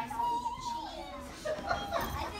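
Children's voices from an audience: a child calls out in a drawn-out high voice for about the first second, over other children chattering.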